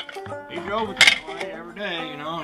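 Metal brake parts and hand tools being handled under a car's rear drum brake: light clinks and short rings, with one sharp clink about halfway through.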